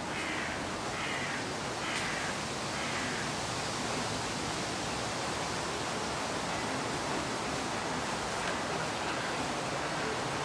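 Steady rushing outdoor noise in a wood, with a bird's four short harsh calls about a second apart in the first three seconds.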